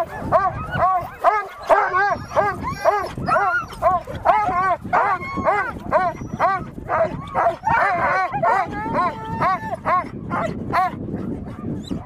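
A team of harnessed sled dogs barking and yelping, many short overlapping barks at about three a second, with a brief held whine a little past the middle.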